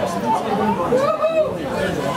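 Indistinct chatter of several spectators talking at once close by, no single voice standing out.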